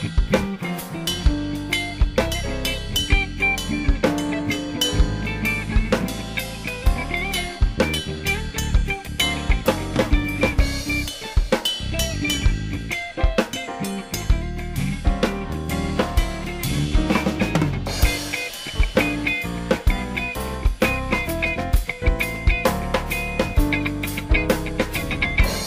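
Jazz band of piano, electric guitar, bass and drum kit playing an instrumental passage with no vocals. The drum kit stands out, with frequent snare and kick strikes over the bass and chords.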